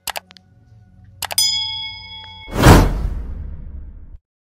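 Subscribe-button sound effects: two quick clicks, then another click and a bell ding that rings out for about a second, followed by a whoosh that swells and fades.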